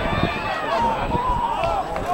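Several voices shouting and calling over one another on a rugby pitch during open play, over an uneven low rumble.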